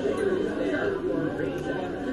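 Indistinct talking and background chatter from several voices in a restaurant dining room.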